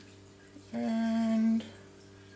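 A woman humming one short, steady note, a little under a second long, about halfway through.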